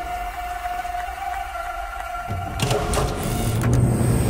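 Tense film soundtrack: a single held drone tone over a low rumble. Deeper bass swells in past the middle, with a few sharp hits near the end.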